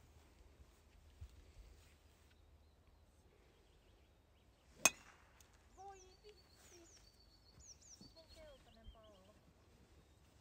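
A golf driver striking a teed ball: one sharp crack about five seconds in. Afterwards, faint birds chirp with quick falling notes.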